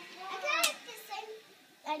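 Young children's high-pitched voices. The loudest is a shrill squeal that sweeps up and back down about half a second in, followed by short calls.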